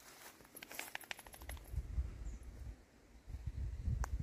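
A quick rattle of about a dozen sharp clicks in the first second and a half, then low rumbling on a handheld microphone outdoors, in two stretches with a short dip between them.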